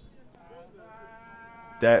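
A faint, steady pitched tone holding one note through a pause in the speech, with a man's voice starting near the end.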